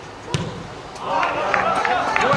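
A football kicked once: a single sharp thud about a third of a second in. From about a second in, players' voices call out across the pitch.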